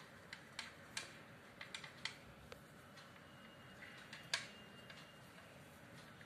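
Faint, scattered sharp clicks and crackles as dry corn husk flowers and thread are handled and stitched, about a dozen at uneven spacing with one louder click a little past the middle.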